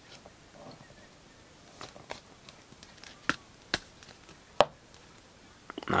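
A trading card being handled and slipped into a rigid clear plastic toploader: soft rustling with a handful of sharp plastic clicks and taps, the loudest a little past the middle.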